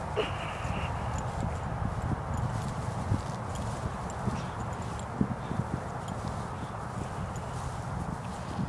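Soft thuds and scuffing of two people grappling on grass, over a steady rush of background noise, with a brief high squeak just after the start.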